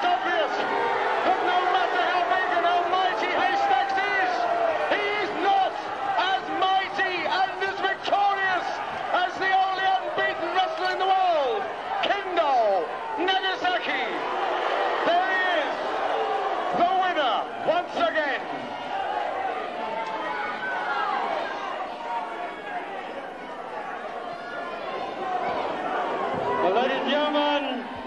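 Wrestling crowd in a hall shouting and calling out, many voices overlapping, with scattered claps and knocks among them.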